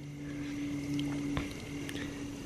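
Cola trickling in a thin stream from the base of an overfilled Pythagorean cup and splattering onto concrete, the cup siphoning itself empty. A steady low hum runs underneath, and its lower note cuts off with a small click about a second and a half in.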